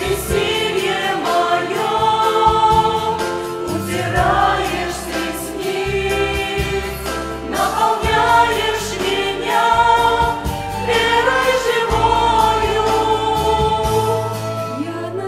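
Mixed choir of adults and children singing a Russian hymn in harmony, over an accompaniment that holds low bass notes.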